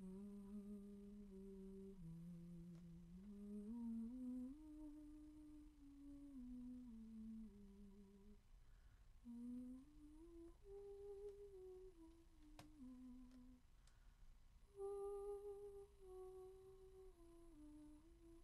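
A singer quietly humming a slow, wordless melody of held notes that step up and down, in three phrases with short breaks about eight and fourteen seconds in.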